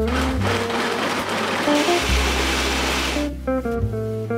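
Countertop blender running, blending fruit and juice into a smoothie. It grows louder about two seconds in and cuts off shortly before the end, with guitar background music playing throughout.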